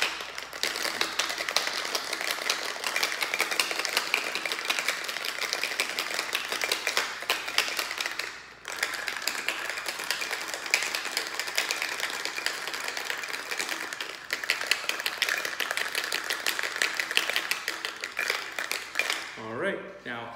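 Ice cubes rattling inside a copper cocktail shaker shaken hard, a fast continuous clatter with a brief break about eight and a half seconds in.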